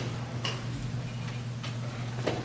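Three light clicks at uneven spacing over a steady low hum.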